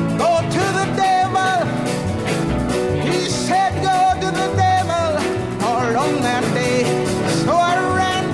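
Background music: a song with a sung vocal over a steady beat.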